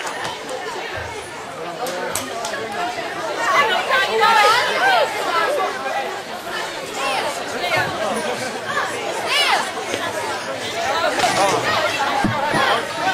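Several people chatting and talking over one another, with no music playing; the voices grow loudest about four seconds in.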